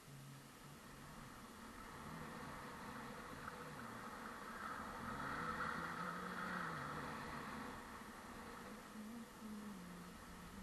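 Faint steady hiss of sliding down groomed snow, swelling for a couple of seconds midway as the run picks up.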